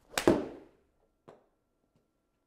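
A golf club striking a ball off an indoor hitting mat: one sharp crack with a short fading tail, then a softer knock about a second later.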